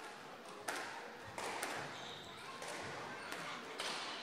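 A few sharp, irregularly spaced knocks of a squash ball, over the steady hum of the court.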